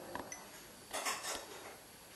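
A short clatter of small hard objects clinking and knocking about a second in, over faint room noise.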